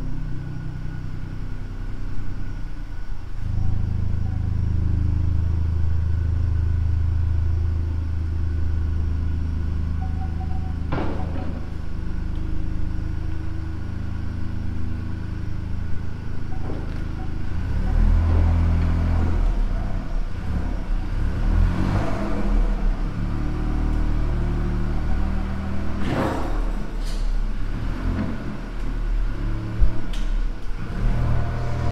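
Ford Fiesta MK8 ST's 1.5-litre three-cylinder turbo engine running at low speed through its Scorpion GPF-back exhaust as the car is driven onto a rolling-road dyno. The engine note is steady at first and changes about 18 seconds in, with a few brief knocks along the way.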